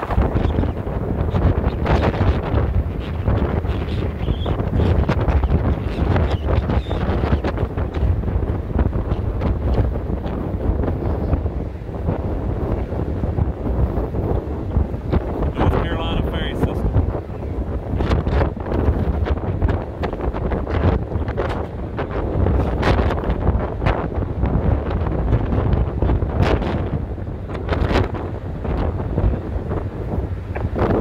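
Strong gusty wind buffeting the phone's microphone on the open deck of a moving ferry: a heavy low rumble with frequent gusts.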